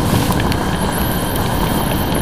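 Motorcycle riding at road speed on a wet road: steady wind rush, engine and tyre noise picked up by a rider-mounted camera, with a few light ticks.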